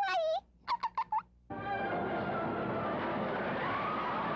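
A few short wavering voice notes, then about one and a half seconds in a full orchestra comes in with a loud sustained passage that holds steady.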